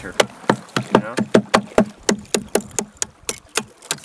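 A hammer repeatedly banging on thick ice crusted over a small boat's stern beside the outboard motor, about four sharp knocks a second, each with a brief ring. The ice is being knocked off a boat that has frozen over.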